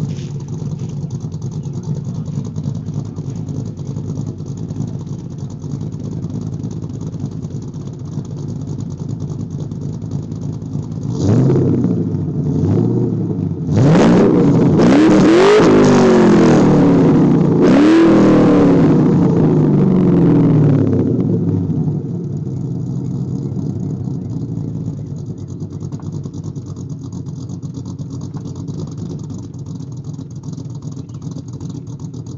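A 2005 Mustang GT's 4.6-litre V8, fitted with a Hot Rod Cams camshaft and an SLP Loudmouth exhaust, idling at its thumping cam idle from the rear exhaust. About eleven seconds in it takes two short throttle blips, then a longer rev that climbs, dips briefly and climbs again, before dropping back to idle.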